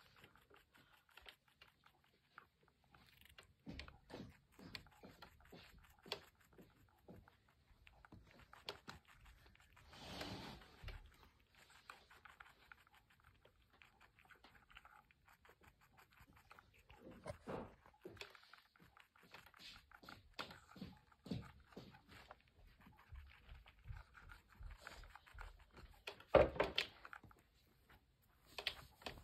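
A young rabbit chewing and nibbling food from a small plastic dish: faint, irregular crunching clicks, with a few louder rustles or scrapes in between.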